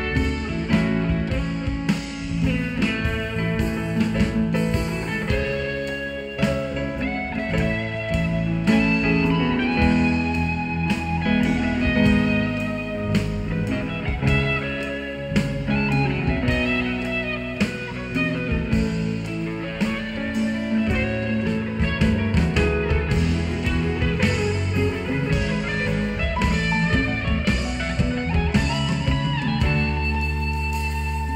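Live rock band playing: an electric guitar lead over bass guitar and a drum kit, loud and steady. It is recorded close to a PA speaker stack.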